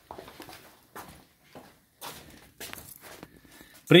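Irregular light knocks and rustles of handling, a few short ones spread across the seconds, as tools are picked up and moved around an engine on the bench.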